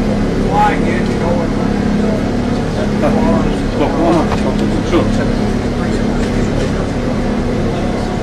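Airport shuttle bus's engine running with a steady low hum heard inside the passenger cabin, under murmured conversation.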